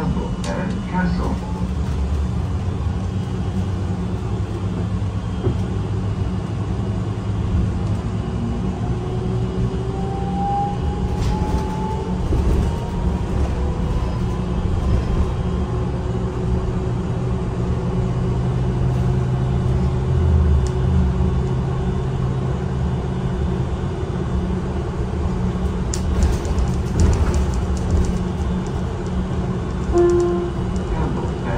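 City transit bus heard from inside the passenger cabin while driving: a steady low rumble of engine and road, with a whine that climbs slowly in pitch from about ten seconds in as the bus gathers speed.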